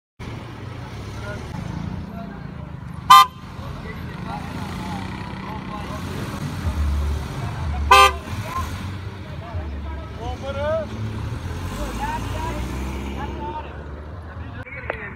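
Two short car-horn toots about five seconds apart, the loudest sounds here, over the steady low rumble of cars moving off.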